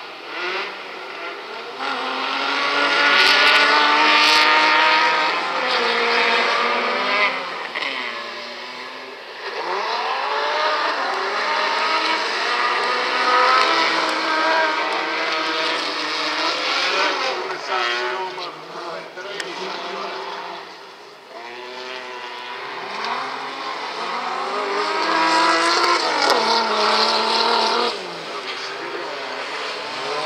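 Several autocross cars racing on a dirt track. Their engines rev hard and climb in pitch through the gears again and again, dropping at each shift, and the sound swells loudly about two seconds in as the group launches off the start.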